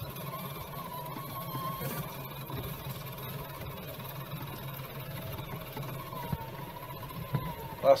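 Electric drivetrain of an Axial SCX6 Honcho RC crawler running under the onboard camera: a steady motor and gear hum with a thin whine that rises and falls as the truck crawls over the creek rocks.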